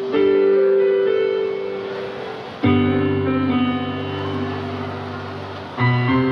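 Electronic keyboard playing slow chords that ring on and fade, a new chord struck about every two and a half to three seconds, with deeper bass notes joining from about halfway.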